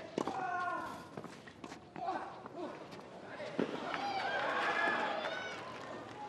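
Tennis ball struck with racquets in a rally, a few sharp hits spaced well over a second apart, over faint background voices.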